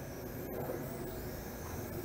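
Faint high whine of the Eachine E33 toy quadcopter's motors and propellers in flight, its pitch wandering slowly as the throttle changes, over a steady low outdoor hum.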